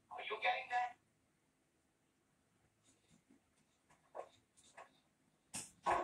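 A man's voice speaking film dialogue, heard through a television speaker. It breaks off after about a second into a long near-quiet pause, with faint short sounds, and speech starts again near the end.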